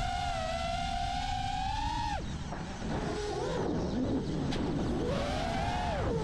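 iFlight Nazgul 5 FPV quadcopter's brushless motors and propellers whining at a steady high pitch, then dropping away sharply about two seconds in as the throttle comes off; after that the pitch swoops up and down with the throttle.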